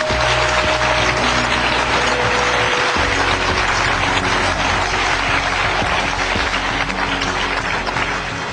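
A large audience applauding steadily, with background music underneath; the sound eases slightly near the end.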